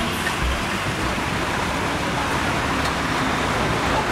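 Steady road traffic noise: an even wash of engines and tyres from slow-moving cars and trucks close by, with no single sound standing out.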